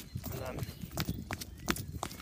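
Footsteps on a hard path, a string of sharp clicks about two or three a second, with faint voices in the background.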